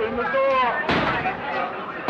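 People's voices in a parking garage, then a single sharp, loud bang about a second in.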